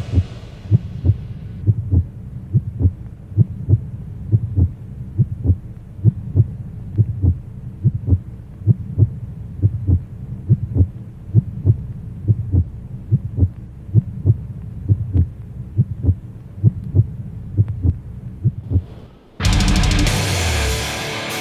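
Heartbeat-style sound effect on a film soundtrack: a steady low thumping pulse, a little under two beats a second, building tension. Just before the end it breaks off and loud heavy metal music cuts in.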